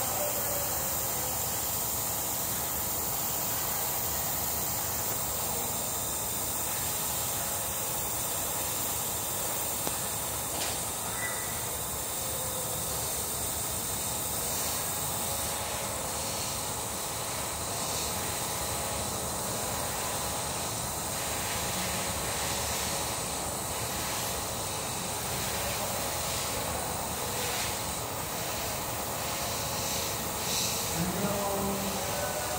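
Gravity-feed airbrush spraying thinned lacquer paint, a steady hiss of air.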